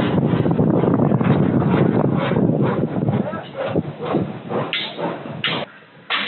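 Indistinct talking mixed with dense background noise; the sound drops away abruptly near the end.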